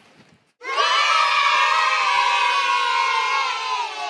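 A group of children cheering together in one long shout, starting about half a second in and dying away at the end.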